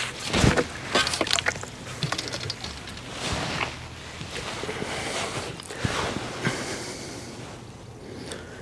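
Handling noises at the water's edge: rustling, scattered clicks and knocks, and light water sloshing as a hooked fish is lifted in a landing net and unhooked.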